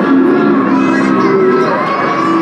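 Crowd of children shouting and calling over one another, with music playing underneath.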